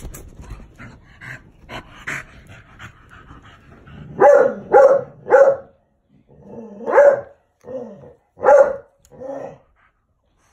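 A dog barking: three quick loud barks about four seconds in, then four more spaced about a second apart near the end.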